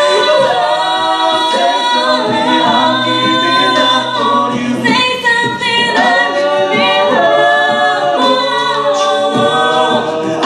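Five-voice a cappella group singing a slow ballad in sustained close harmony, with a held bass line under the chords. The chords change together every second or so.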